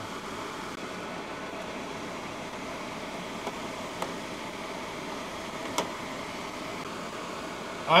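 Steady mechanical whirring background noise, with a few faint clicks as the multimeter and its test leads are handled.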